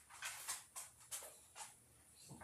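Paintbrush bristles stroking over a plastic egg as metallic sealer is brushed on: about five short, scratchy swishes in quick succession.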